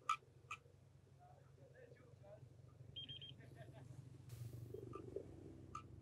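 Total station (a Leica with a PinPoint R500 reflectorless distance meter) sounding after a measurement is triggered: two sharp clicks near the start, then a quick run of about four high beeps around three seconds in. A steady low hum runs underneath.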